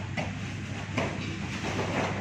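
Dull thuds of two sparring fighters' strikes and footfalls on foam floor mats, several in two seconds, over a steady low hum. The thuds grow louder near the end as the fighters go down together onto the mat in a takedown.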